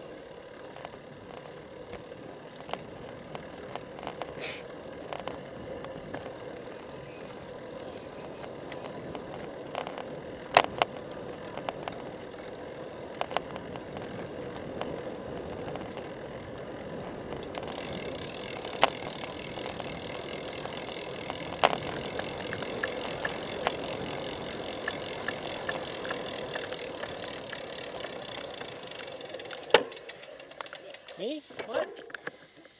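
Road bicycle riding, heard from a camera on the bike: steady rolling and wind noise that grows a little louder and hissier from about two-thirds of the way through, with several sharp knocks from bumps along the way.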